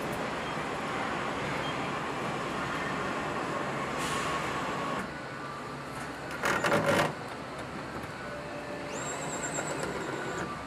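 Steady din of a car assembly plant's machinery. A little over six seconds in, a handheld power tool drives a fastener in a loud burst of rapid clicks lasting under a second, and near the end a high steady whine sounds for about a second.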